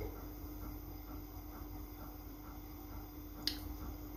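Fingers pulling apart and separating oiled natural hair close to the microphone: a faint rustling with soft scattered ticks and one short crisp rustle near the end, over a low steady hum.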